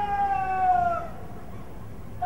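A parade commander's drawn-out shouted word of command: one long held vowel, about a second, that drops in pitch as it ends.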